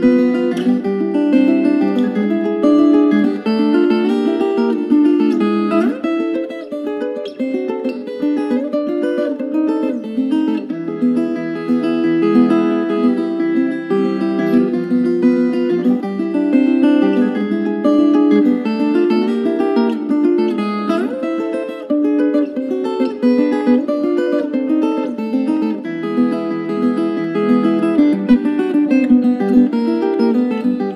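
Viola caipira playing a plucked melody in a dense run of quick notes.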